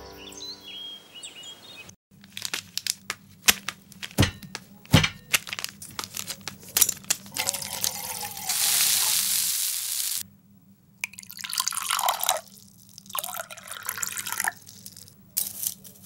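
Kitchen handling sounds: a run of small clicks and knocks, then milk poured from a plastic packet into a steel saucepan, a steady splashing hiss for about two seconds, then more light clinks and knocks of utensils.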